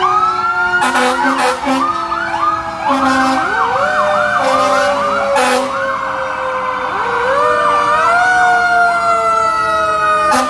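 Several sirens sounding at once: long wails slowly falling in pitch overlap with a rapid yelping siren. A few short, sharp blasts cut in.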